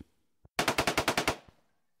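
A sound effect of a short burst of automatic gunfire: about a dozen rapid, evenly spaced shots, roughly fourteen a second, starting about half a second in and lasting under a second.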